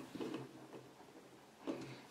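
Faint handling sounds: a few light clicks and taps as the metal heat-sink plates and screws are moved about by hand, over a faint steady low hum.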